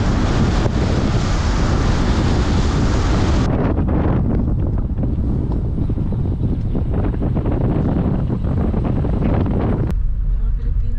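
Wind buffeting the microphone of a moving car, over a steady low road rumble. The high hiss cuts off suddenly about a third of the way in, leaving the lower rumble.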